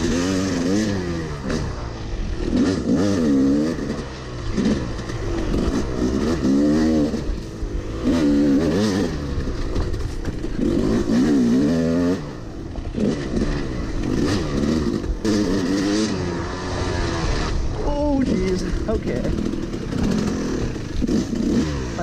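Yamaha YZ250 dirt bike's two-stroke engine, ridden hard, revving up and falling back over and over, every second or two, as the rider accelerates and shifts.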